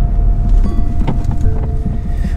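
Steady low rumble inside a car cabin, with the car's engine running, and a few faint clicks.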